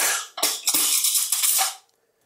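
Metal cutlery clattering and jingling in a kitchen drawer as a knife and fork are picked out, a quick run of rattles that stops just before the end.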